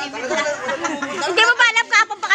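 Speech only: several voices talking over one another in loud chatter.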